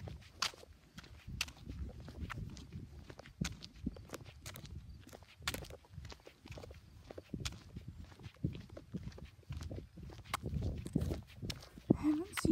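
Footsteps on asphalt pavement, an uneven run of scuffs and light thuds mixed with clicks from a hand-held phone being carried.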